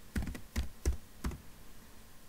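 Typing on a computer keyboard: about five separate keystrokes at an uneven pace.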